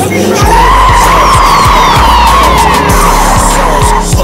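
Car tyres screeching in one long, loud squeal that starts just under half a second in and holds, over a hip hop beat that keeps thumping underneath.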